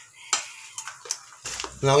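A sharp clink of kitchenware about a third of a second in, followed by a couple of lighter knocks.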